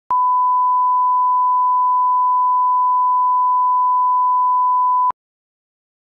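Broadcast line-up test tone, the reference tone that goes with colour bars for setting audio levels: one steady, unwavering beep lasting about five seconds that cuts off suddenly.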